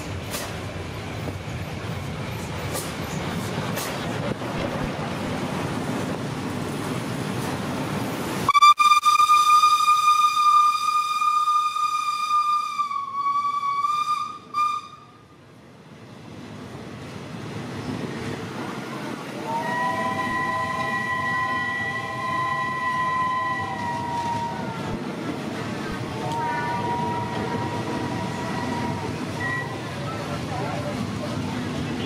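Steam locomotive running in with a rumble, then its steam whistle gives one long, loud blast of about six seconds that cuts off sharply. The passenger coaches follow with steady wheel noise on the rails, and two softer held tones of a few seconds each sound over it.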